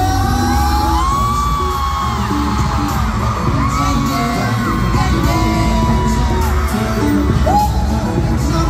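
Live pop song in an arena, heard from the audience: a male vocalist sings long held notes over a loud, bass-heavy backing track, with fans whooping and screaming.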